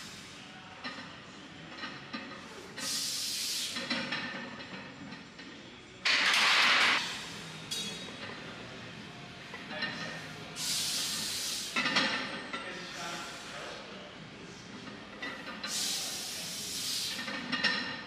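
Forceful hissing breaths, four of them a few seconds apart, from a lifter bracing and straining through a heavy barbell back squat double; the second, about six seconds in, is the loudest.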